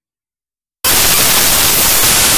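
Total silence, then about 0.8 s in a loud burst of white-noise static starts abruptly and holds steady, a noise glitch at the tail of the audio track.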